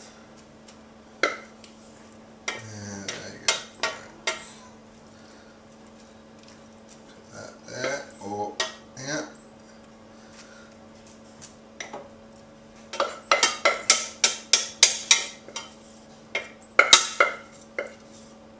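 Wooden spoon scraping and knocking against a stainless steel saucepan as fried vegetables are tipped out into a baking dish. A few scattered knocks and scrapes come first, then a quick run of knocks, about three a second, near the end.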